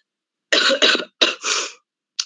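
A woman coughing four times in quick succession, starting about half a second in.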